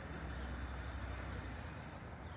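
Steady low rumble of road traffic with an even background hiss.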